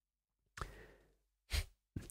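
A man breathing into a close microphone between sentences: a soft breath about half a second in and a shorter, louder one near the end, with near silence around them.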